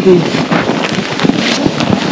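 Crunching and scraping of snow being shovelled, with wind buffeting the microphone.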